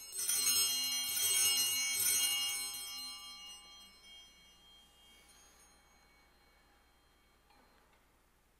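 A set of altar bells rung at the elevation of the chalice during the consecration: a burst of bright, many-toned ringing for about two and a half seconds that then fades away.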